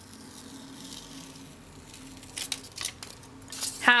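A paper masking strip being peeled off stamped card stock: a quiet, drawn-out rasp of paper lifting, then a few short, crisp paper rustles near the end.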